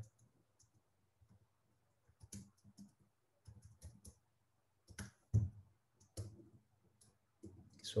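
Computer keyboard keys clicking faintly in short irregular runs, starting about two seconds in, with one sharper keystroke a little past the middle.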